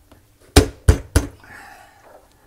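Three sharp snaps about a third of a second apart as supports at the top of a dishwasher's stainless-steel tub are clipped back into place.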